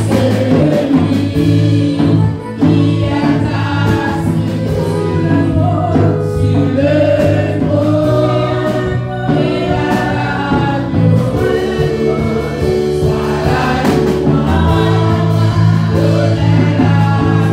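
Live gospel worship song: a woman leads the singing into a microphone with backing singers, over sustained low chords and a drum kit.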